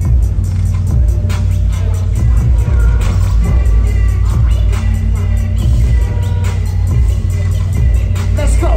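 Loud live rap music from a concert PA, carried by a heavy bass-driven beat that pounds on without a break.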